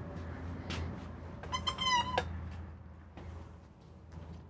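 A single high-pitched squeak, just under a second long and wavering slightly in pitch, about a second and a half in. Around it are a few light clicks of handling or footsteps, over a steady low hum.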